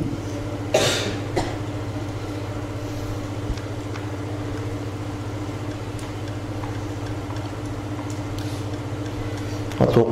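A steady low electrical hum with a few fixed tones above it, and a brief burst of noise just under a second in.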